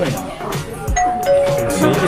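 A two-note descending "ding-dong" chime about a second in, over background music.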